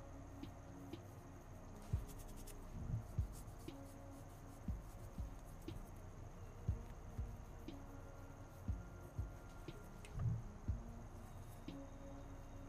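Paintbrush working acrylic paint onto a canvas board: faint, irregular soft taps and small scratchy strokes, a few each second.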